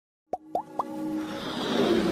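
Logo-intro sound effects: three quick pops, each rising in pitch, about a quarter second apart, then a swelling whoosh that builds toward the end.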